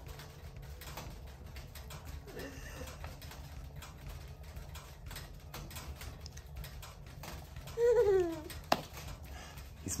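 An infant's short coo falling in pitch about eight seconds in, amid faint clicks and taps of a metal card wallet being handled, with one sharp click just after the coo, over a low steady hum.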